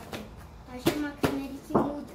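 Cardboard toy box being handled and turned over, with three short, sharp sounds in the second half mixed with brief voice sounds from a child.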